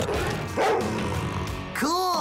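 Cartoon Rottweiler barking over a background music score.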